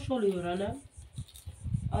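A woman speaking Turkish, her sentence trailing off with falling pitch about a second in, then a short pause before talk resumes near the end.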